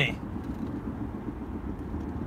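Steady low rumble inside a moving car's cabin: road and engine noise.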